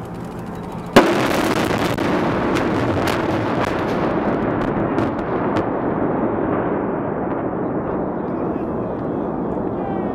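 Demolition charges blowing up a suspension bridge: one sharp blast about a second in, then a few more cracks over the next few seconds under a long rolling rumble that slowly fades.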